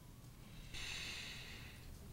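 A single breath close to a microphone: a hiss that starts abruptly just under a second in and fades over about a second.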